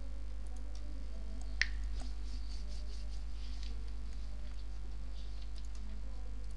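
A few computer mouse button clicks, one sharp click about a second and a half in and a softer one just after, over a steady low hum.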